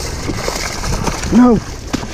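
Feet sloshing and trampling in shallow muddy water and weeds, a steady rough splashing noise, with a man's shout of "No" about a second and a half in.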